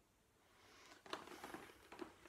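Faint rustling and shuffling of clothing and body on a floor mat as a person sits down onto it, starting about half a second in, with a few soft knocks around a second in.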